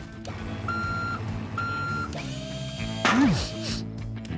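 Two long electronic warning beeps, like a reversing alarm, from a cartoon bulldozer with a crane arm, each about half a second, over background music.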